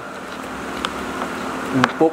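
A spoon clicking lightly against a takeaway bowl while food is scooped up, a few soft clicks and one sharper one near the end, over a steady room hum.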